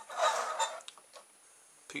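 Handling noise as a hand grabs and lifts a plastic storage-container toy car: a brief rustling scrape lasting under a second, then a couple of small clicks.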